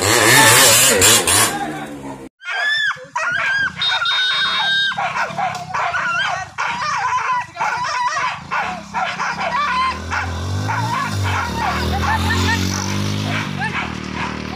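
A motorcycle revs briefly at first. After a cut, a racing dog held at the start line yelps and barks over and over. A low motorcycle engine hum comes in under it during the last few seconds.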